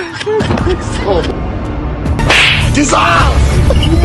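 A single slap, a short noisy hit a little past halfway, over background music.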